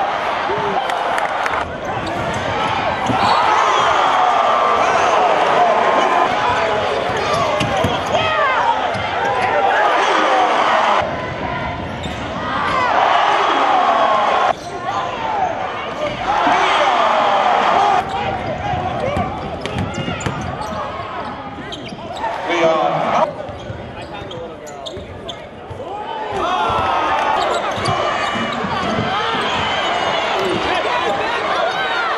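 Basketball game audio from spliced highlight clips: crowd noise and voices in an arena with court sounds such as the ball bouncing, cutting abruptly from one clip to the next several times.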